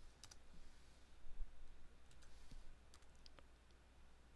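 A few faint, scattered clicks of computer keys, over a low steady hum.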